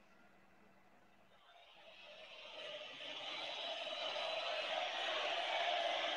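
Dead air for about two seconds, then faint, steady background noise with no speech that slowly grows louder.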